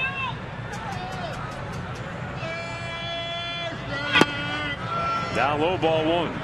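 Ballpark crowd noise with individual fans shouting, including one long held yell. About four seconds in there is a single sharp pop as an 81 mph pitch smacks into the catcher's mitt.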